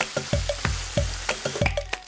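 Background music with a steady beat of about three a second, over cubed tofu sizzling in a frying pan as a wooden spoon stirs it; the sizzle thins out near the end.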